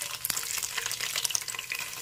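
Paneer cubes frying in hot oil in a kadai: a steady sizzle with a dense scatter of small crackling pops.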